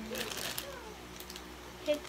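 Thin plastic toy wrapper crinkling as it is handled, in short scattered rustles.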